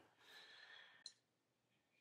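Near silence: room tone between spoken phrases, with one faint click about halfway through.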